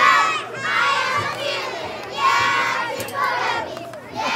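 A group of children shouting together in loud, high-pitched bursts about a second apart, a chant or cheer from the players or the sideline.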